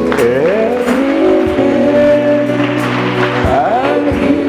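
Worship music with sustained chords and a melody line that slides up in pitch twice, once just after the start and again near the end.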